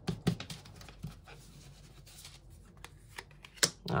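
Playing-card-style oracle cards being handled, drawn from a spread deck and laid on a table: scattered light clicks and slides of card stock, with one sharper click near the end.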